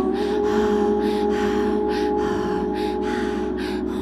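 Live-looped ambient music: a layered drone with a held note, over which breathy vocal gasps repeat about twice a second.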